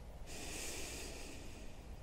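A man's soft, slow breath out, a faint hiss lasting about a second and a half, following a breath in just before it.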